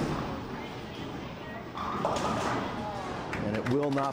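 Bowling ball thudding onto the lane and rolling toward the pins, with a louder rush of noise about two seconds in. A man's voice starts near the end.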